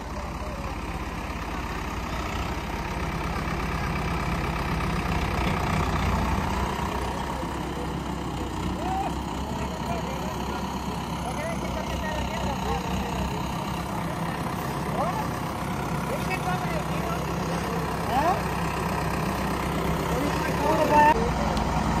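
Diesel tractor engines of a Sonalika 750 and a New Holland 3630 running steadily at low revs, with faint voices of onlookers over them.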